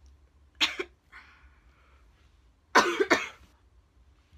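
A woman coughing close to the microphone: one short cough about half a second in, then a louder double cough a little before three seconds in, with a breath drawn between them.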